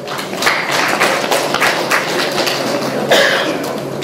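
Audience applauding, with many hands clapping at once at a steady level.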